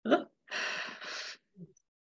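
A person's audible breath, a breathy gasp lasting about a second, after a brief voice sound at the start.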